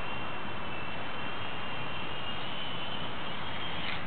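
Electric radio-controlled model UH-60 Black Hawk helicopter flying overhead: a steady high motor whine that wavers slightly in pitch over a continuous hiss.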